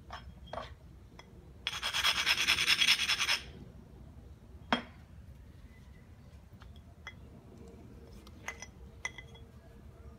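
The edge of a knapped stone biface being ground with an abrader for about a second and a half, a rapid gritty scrape, followed a second later by one sharp click and a few faint ticks of stone on stone.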